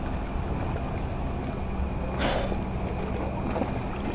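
Steady low hum of a boat engine idling in the harbour. A short noisy burst, like a splash or hiss, comes about two seconds in.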